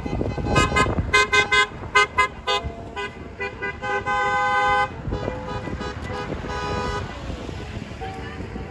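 Car horns of passing vehicles honking: a quick run of short toots from several horns at different pitches, then one long steady blast about four seconds in, with fainter honks after it.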